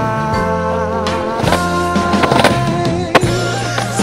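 A skateboard rolling on smooth concrete with a few sharp board impacts, the loudest a little after three seconds in, over a music track with sustained, wavering notes.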